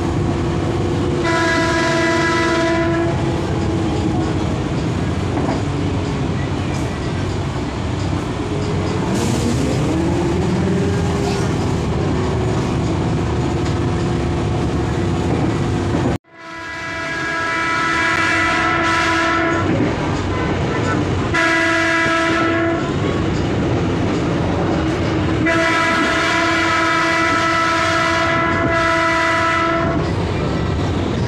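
KRD MCW 302 diesel railcar running, heard from inside: the drone of its Cummins NT855 diesel engine and wheel noise, with the railcar's horn sounding four times: a short blast about a second in, then three longer blasts in the second half. The engine note rises in pitch around ten seconds in, and the sound cuts out abruptly for a moment halfway through.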